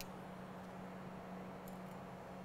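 Quiet workshop room tone: a steady low hum, with a few faint ticks near the start and near the end.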